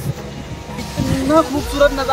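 A pop song with a singing voice, its notes held and sliding between pitches, softer in the first second.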